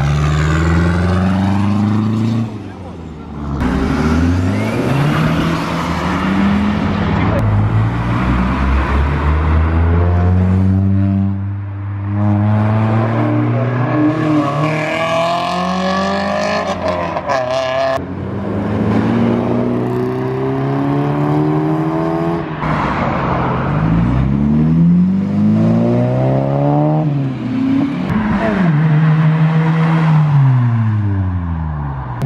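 Several modified cars accelerating past one after another, engines revving up through the gears so that the pitch climbs and drops again with each car. Near the end, one car's note falls as it goes by while the next pulls up behind it.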